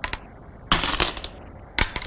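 Go stones handled on a demonstration board: a brief click at the start, a scraping rattle of about half a second a little before the middle, and a sharp clack near the end as a stone is set down.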